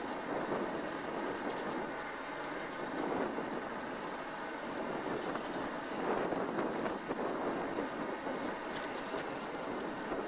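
Jet engine noise from B-52 Stratofortress bombers on the ground: a steady, rushing roar that swells and eases every few seconds.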